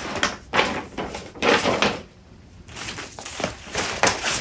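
Paper being handled on a table: a map sheet and a stack of brochures rustling and being set down, in a string of rustles and soft knocks with a short lull a little past halfway.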